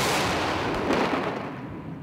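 A mortar shot: the loud blast, heard just before, rumbles on and fades away steadily.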